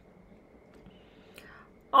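A pause in a woman's speech: faint room noise with a soft breath about one and a half seconds in, then her voice starts again right at the end.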